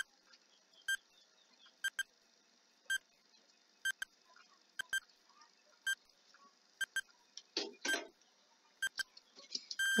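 Countdown-timer sound effect: a short pitched beep-tick about once a second, several of them doubled, over a faint steady hiss. A brief, louder, lower sound comes about eight seconds in.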